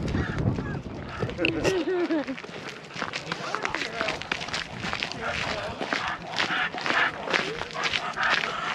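Footsteps of several people and dogs on a paved path, a quick run of short scuffs and taps. About a second and a half in there is a brief wavering call.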